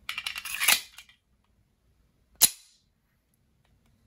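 Magazine pushed into the grip of a Smith & Wesson 1911 and seated, a quick rattle of metal clicks, then about two and a half seconds in the released slide snaps forward with one sharp clack, chambering a dummy .45 ACP round from slide drop.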